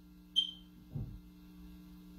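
A pause in a speech: a steady low electrical hum, with a short sharp high click about a third of a second in and a soft low thud or breath about a second in.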